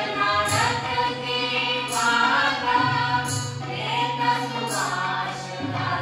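Mixed chorus of men and women singing a folk song in unison, over a steady harmonium drone. Hand-drum or cymbal strikes come about every second and a half.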